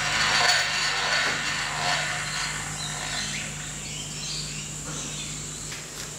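Milling machine running with a steady low motor hum, while the table is wound across by a set offset to line the spindle up over a hole centre. A louder rushing, whirring noise swells at the start and fades away over the next few seconds.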